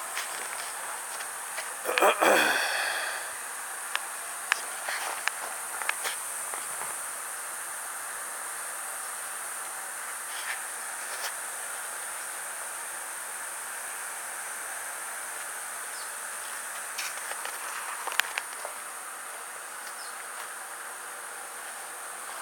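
Steady high-pitched buzzing of insects, with scattered clicks from the camera being handled and one short squeak that falls in pitch about two seconds in.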